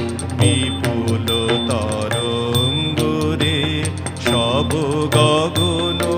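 A man singing a slow, ornamented Indian-style song into a microphone, his voice gliding between notes over instrumental accompaniment with a steady beat.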